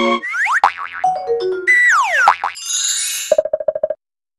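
A quick string of cartoon-style sound effects: boings and sliding tones that swoop up and down, a few falling stepped notes, then a fast stuttering beep near the end that cuts off suddenly.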